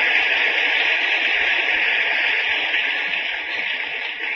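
Audience applause: a dense, even clatter of many hands that has just begun and eases slightly near the end.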